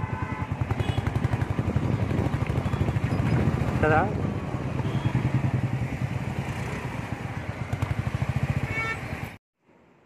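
Motorcycle engine running while riding, heard close from the bike itself as a steady, rapid, even beat. It cuts off suddenly near the end.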